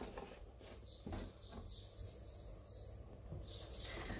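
Quiet kitchen room tone with a few soft, high chirps spread through it, like a small bird singing outside, and faint taps as peeled onion halves are moved on a chopping board.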